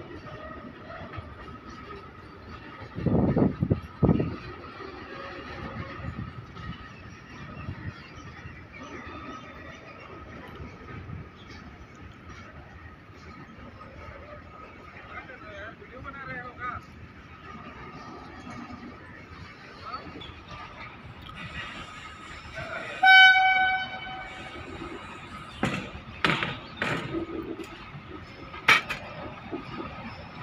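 BTPN tank wagons of a goods train rolling past, with a steady high tone running underneath. Two loud thumps come about three and four seconds in, and a short horn toot about 23 seconds in, followed by a few sharp clicks.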